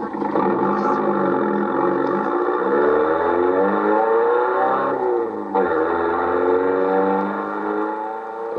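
Sports car engine sound effect, revving and accelerating away with its pitch climbing; about five seconds in the pitch drops sharply as it shifts gear, then climbs again.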